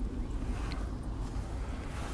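Low, unsteady rumble of wind buffeting the microphone outdoors.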